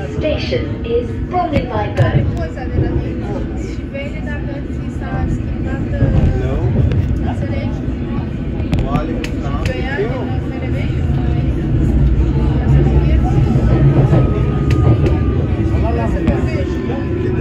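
London Underground District line train heard from inside the carriage as it runs along surface track: a steady low rumble of wheels on rails that grows louder near the end. There are a few sharp clicks about nine seconds in, and a faint whine gliding slightly down over the second half.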